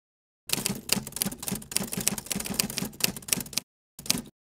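Typewriter keys striking in a quick run of clicks, about six a second, for about three seconds. After a short pause comes a brief final burst of strokes.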